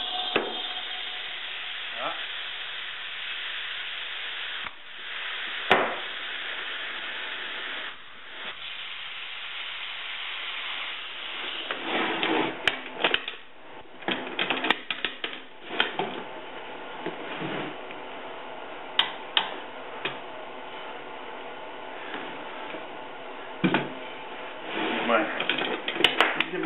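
Compressed air hissing steadily into a 2½-gallon spray-equipment pressure pot as it is charged, to pressure-test the hoses for leaks. The hiss dips briefly twice early on. From about twelve seconds it goes on more quietly under scattered clicks and knocks of the fittings being handled.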